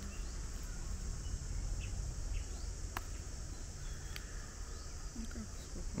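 Steady high-pitched insect chorus, over a low rumble on the microphone, with one sharp click about halfway through.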